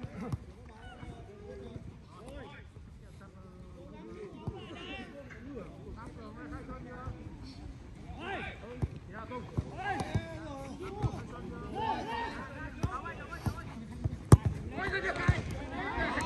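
Football players shouting and calling to each other during play, with a few sharp thuds of the ball being kicked. The clearest kick comes about two seconds before the end.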